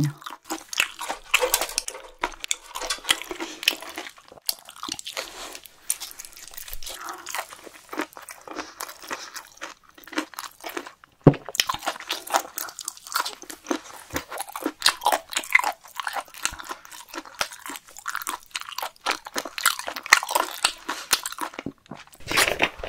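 Close-miked eating sounds of a person chewing grilled webfoot octopus (jukkumi) coated in spicy sauce: a steady run of small quick mouth clicks and smacks, with one sharper click about halfway through.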